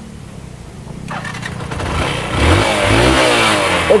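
Motorcycle engine starting about a second in, then revved, its pitch rising and falling as the throttle is blipped.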